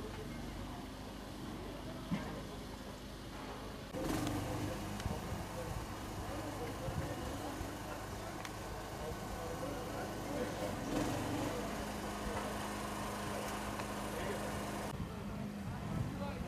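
Outdoor background sound: a steady low engine hum with faint, indistinct voices. The sound changes abruptly about four seconds in and again near the end.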